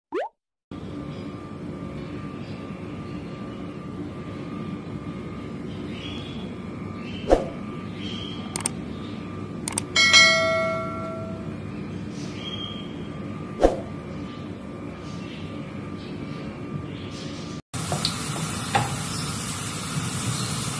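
Garlic frying in oil in a pan, a steady sizzle in the last couple of seconds. Before it comes a low steady kitchen hum with a few light clicks, and about halfway through a short chime from an on-screen subscribe animation that rings and dies away.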